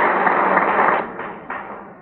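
An audience applauding, the clapping fading away about a second in with a few last claps.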